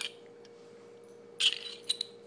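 Pistol parts being handled during reassembly: a light metal click, then about a second and a half in a short metallic scrape and rattle, and another click near the end, as the barrel is fitted into the slide.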